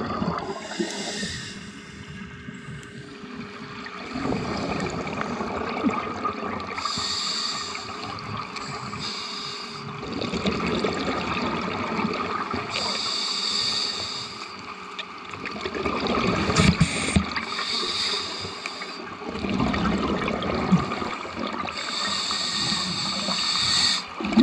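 Scuba diver breathing underwater through a regulator: a hissing inhalation and then a louder bubbling exhalation, repeating in regular cycles about four times.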